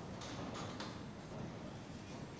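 Steady low hum of a metro platform beside a train standing with its doors open, with three short, sharp clicks in the first second.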